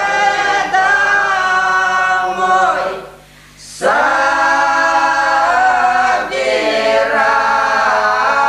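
A small group of elderly village women singing a traditional Russian folk song a cappella, several voices together in long drawn-out lines. The singing breaks for a breath a little after three seconds in, then comes back in.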